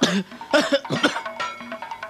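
A man coughing in distress, a quick run of harsh coughs in the first second, over background music.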